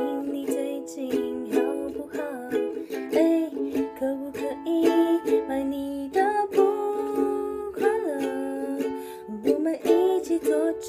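Ukulele strummed in a steady rhythm, playing chords, with a woman's voice singing a melody over it at times.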